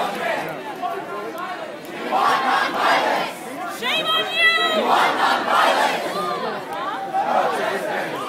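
Large protest crowd shouting and yelling, many voices overlapping at once, with one high-pitched held cry standing out about halfway through.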